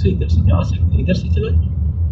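Steady low rumble of engine and road noise inside a car's cabin while driving slowly in traffic, with a person's voice talking over it in the first second and a half.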